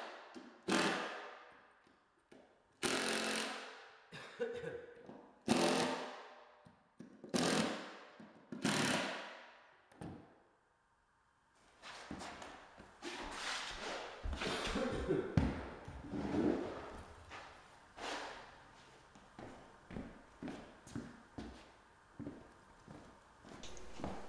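Makita cordless drill driving screws down into a plywood subfloor in short bursts, about five in the first ten seconds, each dying away quickly. After a pause come lighter scattered knocks and clicks.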